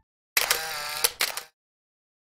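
A short logo-animation sound effect: a quick cluster of sharp clicks over a bright shimmer, lasting about a second and starting a moment after a brief silence.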